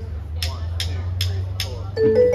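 Drumsticks clicked together four times, evenly at about two and a half a second, counting the band in, over a steady low amplifier hum. The keyboard intro begins right at the end.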